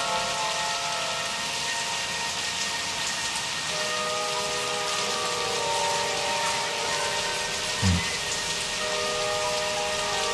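Hip-hop song intro: a steady rain sound effect under sustained, layered chords that shift to a new chord about four seconds in. A single deep thump comes near the end.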